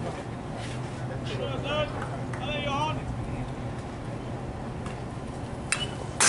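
Ballfield sounds: a few short calls and chatter from players and spectators over a steady low hum, then a sharp pop near the end as the pitch smacks into the catcher's mitt.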